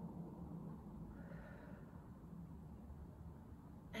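A woman's soft breath out about a second in, over faint room tone with a low hum.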